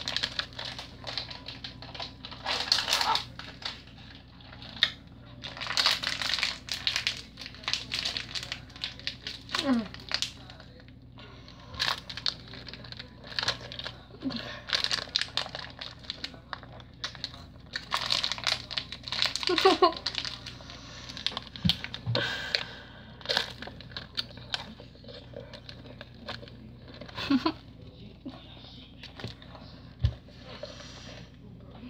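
Plastic Skittles wrapper crinkling in the hands, in irregular bursts.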